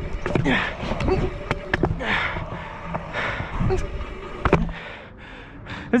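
Scooter wheels rolling over concrete ramps, with a low rumble, gusts of wind on the helmet-mounted camera's microphone and scattered knocks and clatters from the scooter. The rumble dies away about four and a half seconds in, as the rider comes to a stop.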